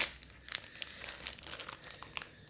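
Handling noise close to the microphone: one sharp click at the start, then light, irregular clicks and crinkling.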